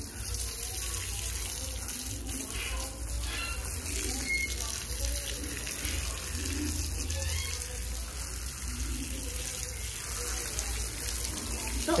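Garden hose spraying water, the stream fanned out by a thumb over the end, splashing steadily onto a wet dog's coat and the brick floor as the shampoo is rinsed off.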